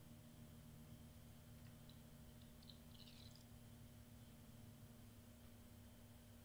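Near silence: room tone with a steady low hum, and a few very faint small clicks about two to three seconds in.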